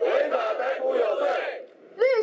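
A crowd of protesters chanting a slogan together in Mandarin, many voices at once, stopping about a second and a half in.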